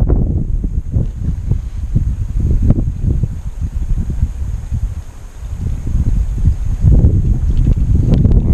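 Wind buffeting the microphone: an uneven low rumble that dips briefly about five seconds in and picks up again near the end.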